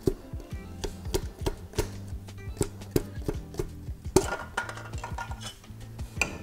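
Hammer blows tapping the last piston out through the cylinder bore of a Volvo 340's 1.4 litre engine block: repeated sharp metallic knocks, about three a second, with background music underneath.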